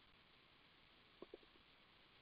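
Near silence, with two faint keyboard key clicks a little over a second in.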